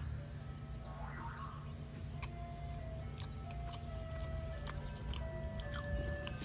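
Faint ice cream truck jingle: a simple tune of held single notes stepping up and down, over a low steady rumble, with a few light clicks.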